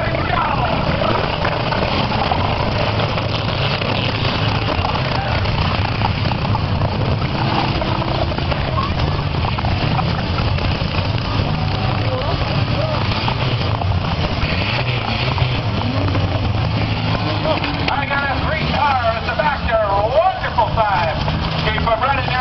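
Several demolition derby cars' engines running together in a steady low drone, mixed with crowd voices. The voices grow louder and more excited near the end.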